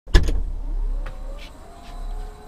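A sharp click, then the Mercedes-Benz GLS's power tailgate motor whirring steadily as the tailgate lowers, heard from inside the cargo area.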